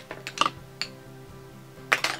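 Soft background music with steady held notes, with a few light clicks, three close together near the start and one just before the end, from small makeup containers being handled.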